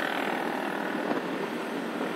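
Steady road and traffic noise from a vehicle driving along a city street.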